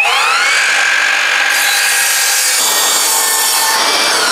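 Evolution brushless sliding mitre saw spinning up with a rising whine, then cutting at an angle through a length of tanalised timber, and winding down with a falling whine near the end.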